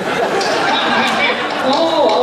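Several voices talking over one another in a hall.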